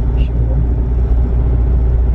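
Steady low engine and road rumble inside a moving car's cabin.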